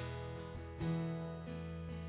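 Live acoustic guitar strumming slow chords, with piano accompaniment.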